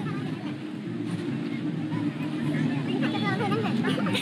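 Background crowd chatter from several people, with faint voices rising about three seconds in, over a steady low drone.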